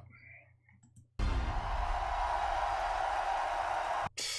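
Recorded cheering of a large festival crowd, a steady wash of noise that starts abruptly about a second in and cuts off suddenly at the end. A few faint clicks come just before it.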